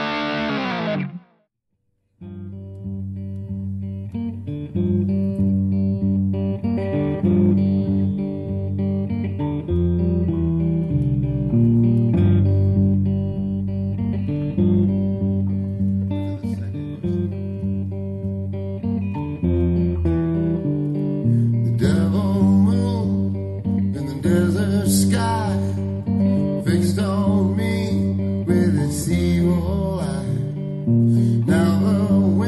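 A short, wavering, distorted electric guitar sting dies away about a second in, followed by a moment of silence. Then a thinline archtop electric guitar with TV Jones pickups starts playing a blues tune, and a voice joins in without words for the last several seconds.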